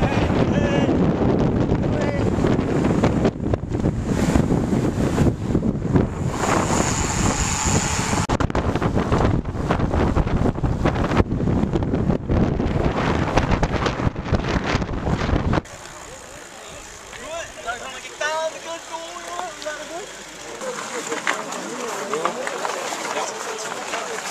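Heavy wind buffeting on the camera microphone while riding a bicycle at speed. About two-thirds of the way through it cuts off suddenly to a much quieter scene of people talking, with a laugh near the end.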